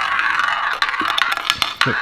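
A small ball rolling round the track of a spinning toy roulette wheel: a steady rattling whir broken by many quick clicks as the ball bounces against the wheel.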